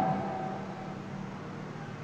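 Pause in speech: room background with a steady low hum.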